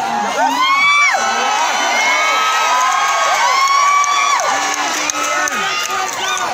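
Large rally crowd cheering and shouting, many voices overlapping in long, arching shouts.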